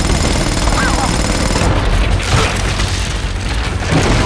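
Loud film action-scene sound mix: a deep, steady rumble with crashing debris and gunfire as a wall is shot apart.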